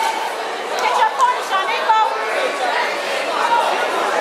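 Crowd chatter with several voices calling out, overlapping, in a large hall.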